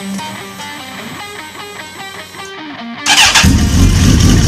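Guitar background music, then about three seconds in a Suzuki sportbike engine starts suddenly and runs loudly with a rough, pulsing rumble.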